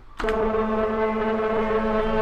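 One long, steady held tone with a rich, horn-like buzz, a sustained note or drone in the teaser's music. It starts just after the beginning and holds at one pitch.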